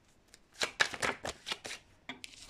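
A deck of fortune-telling cards being shuffled by hand: a run of short, sharp card clicks and slaps, several a second, starting about half a second in.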